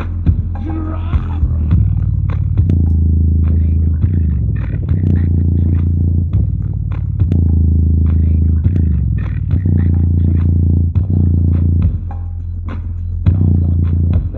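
Logitech subwoofer playing bass-heavy music loud, its cone moving visibly: a deep bass line whose notes change every second or two, with sharp percussive hits above it.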